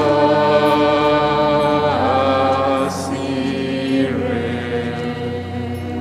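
Church choir singing a slow chant, holding long notes with occasional gliding changes of pitch.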